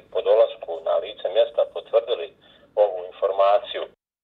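A man speaking Bosnian over a telephone line: thin, narrow-band voice with no highs above the phone band. The speech cuts off suddenly at the end.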